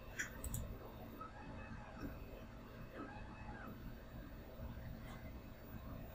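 Quiet room tone with two soft computer mouse clicks near the start.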